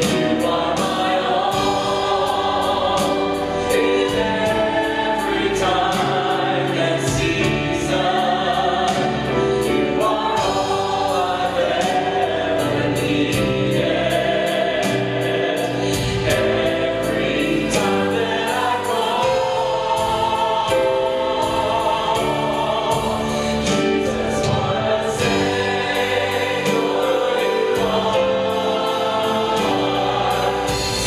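Church choir and praise-team singers performing a gospel worship song with band accompaniment and a steady drum beat.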